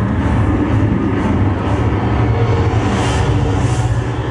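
Steady low drone of WWII propeller warplane engines in a documentary film's soundtrack, played through a theater's speakers, with a rushing hiss swelling near the end.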